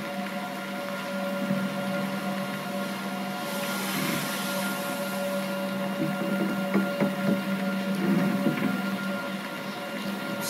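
A steady low drone with a few held tones from a film's music score, playing over the room's speakers. A wash of hiss swells from about three and a half to five seconds in, and a few faint knocks come near the end.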